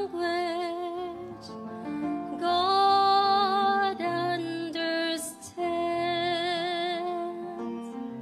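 A woman singing a slow gospel song with a soft instrumental accompaniment, holding her notes with vibrato and pausing briefly between phrases.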